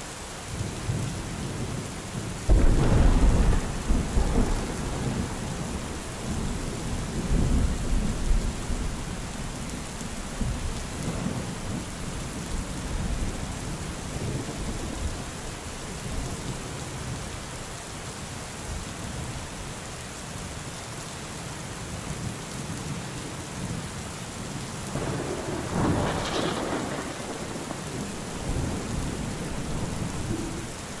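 Steady rain falling with rolls of thunder: a loud rumble about two and a half seconds in, a second around seven to eight seconds, and another swelling near the end.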